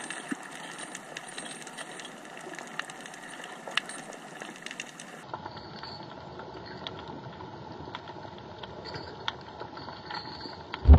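Underwater ambience picked up by a camera in its housing: a steady hiss with scattered sharp clicks and crackles. The sound turns duller and narrower about halfway through, where one clip cuts to the next.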